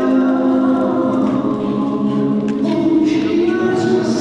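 Choral music: a choir singing slow, held chords.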